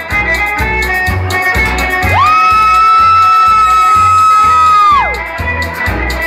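A live band with electric guitars plays a polka, with a bass pulse about twice a second. From about two seconds in, one long high note slides up, holds for about three seconds and slides back down, and it is the loudest thing in the clip.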